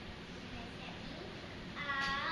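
A young girl's voice: soft murmuring at first, then a loud, high-pitched, drawn-out exclamation near the end as she reads a picture book aloud.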